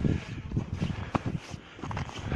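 Irregular footsteps on snow-dusted rocky ground, soft thumps and crunches a few times a second.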